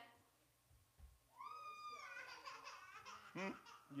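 A young child's high-pitched voice: one high call about a second and a half in that rises, holds and falls, then softer babbling. A low 'hmm' comes near the end.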